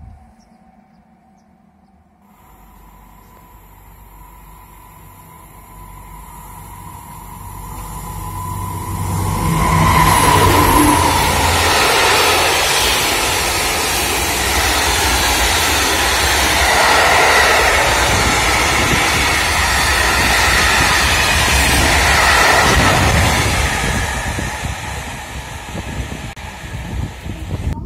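Freight train of covered hopper wagons passing close by at speed: a thin steady tone and a growing rumble as it approaches, loud wheel and wagon noise for about a dozen seconds from around ten seconds in, then fading as the last wagons go by.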